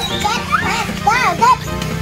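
Children's voices over background music.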